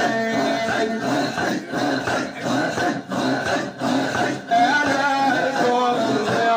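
A group of men chanting in a Moroccan Sufi devotional gathering, the sound broken into short rhythmic pulses about three every two seconds. A sung melody comes back in strongly about four and a half seconds in.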